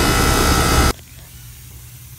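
R-22 heat pump outdoor unit running with a loud steady noise and low hum that cuts off suddenly about a second in. A faint hiss follows: refrigerant leaking from the back of a solder joint on the filter drier.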